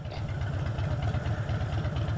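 Motorcycle engine running steadily, a fast even low beat.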